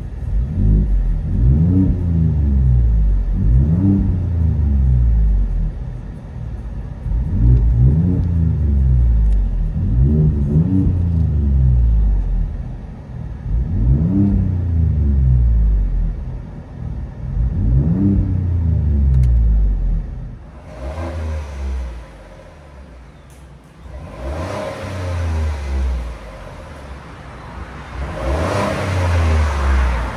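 Ford 3.5-litre EcoBoost twin-turbo V6 with an X-pipe and straight-piped dual exhaust, mufflers and resonator removed, blipped repeatedly in park and heard from inside the cab: a series of short revs climbing and falling back every few seconds. About twenty seconds in it changes to the exhaust revving as heard from outside behind the truck, sounding brighter.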